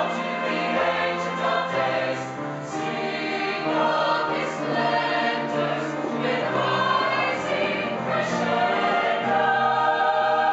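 Mixed choir of men's and women's voices singing in harmony, holding long chords that change every second or two.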